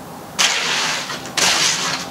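Wet concrete sliding and scraping out of a tipped wheelbarrow in two gritty rushes, one about half a second in and another near the end.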